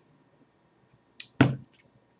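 Mouth sounds right after a sip of beer: a short hiss, then a sharp breathy exhale about a second and a half in that fades quickly.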